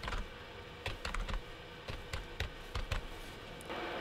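Typing on a computer keyboard: a run of short, irregular key clicks as a numeric IP address is entered.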